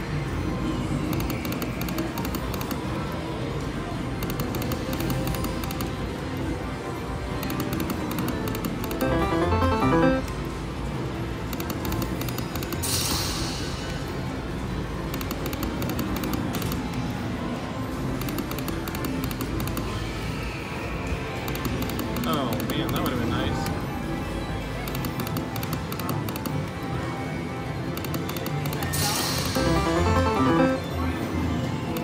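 Olympus Strikes video slot machine playing its game music and electronic spin and reel-stop sounds as the reels are spun, with a couple of short bright chimes, over a steady background of casino noise and voices.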